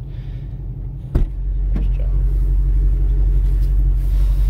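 2020 Shelby GT500's supercharged 5.2-litre V8 idling with a steady low rumble, heard from inside the cabin. About a second in there is a sharp click as the passenger door opens, and after it the deep rumble is louder.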